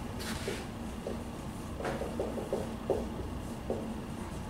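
Dry-erase marker writing on a whiteboard: a run of short squeaky strokes, with one sharper tap about two seconds in.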